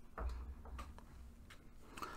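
Quiet room tone with a few faint, scattered ticks and a low rumble.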